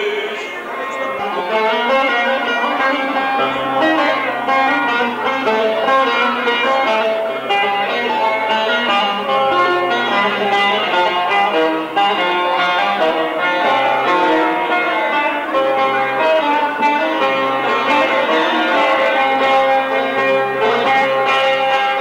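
Bağlama (Turkish long-necked saz) played in an instrumental passage without voice, with quick runs of plucked notes between sung verses of an aşık folk song.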